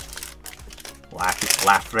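Hockey card pack's foil wrapper being pulled open and the cards slid out: small scattered crinkles and rustles in the first second. A spoken word, louder, comes in near the end.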